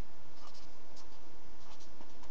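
A marker writing on paper in several short, faint scratchy strokes over a steady low hum.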